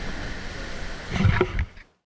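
Wind and sea noise on the open deck of an ocean racing yacht sailing at speed. A little past a second in there is a louder gusty rush with buffeting on the microphone, and then the sound dies away just before the end.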